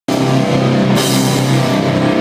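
A metalcore band playing live and loud: heavily distorted electric guitars over a drum kit, with cymbals crashing in about a second in.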